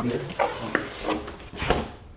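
Handling noises from a surfboard being moved in its padded board bag: irregular rubbing and a few light knocks.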